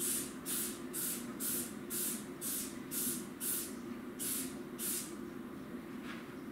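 A hand trigger spray bottle of cleaner squirted about ten times in quick succession, roughly two short hissing sprays a second, with a brief pause before the last two.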